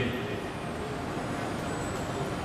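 Steady, even background noise with no voice and no distinct events.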